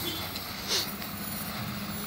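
Coach bus diesel engine running at low revs, a steady low rumble.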